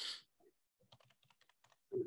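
Faint computer keyboard typing: a scatter of light key clicks over about a second and a half.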